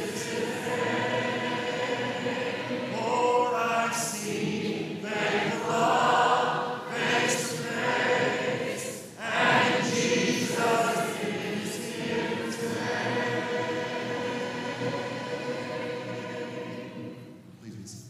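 A large congregation singing a hymn a cappella in four-part harmony, the song ending and the voices dying away near the close.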